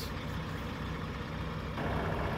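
Heavy diesel truck engine idling, a steady low rumble heard from inside the cab.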